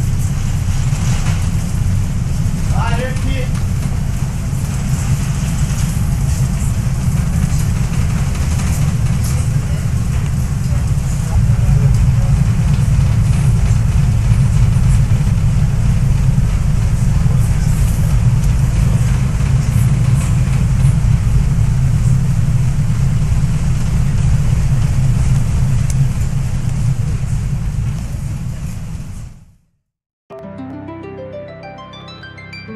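Steady low rumble of a passenger ferry's engine heard inside the cabin, with faint voices over it; it grows louder about eleven seconds in and fades out near the end.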